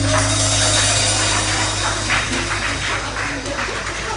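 Applause after a live pub band's last chord, with a steady low hum held underneath.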